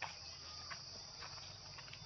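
Insects trilling faintly and steadily in a continuous high-pitched drone, with a few faint ticks over it.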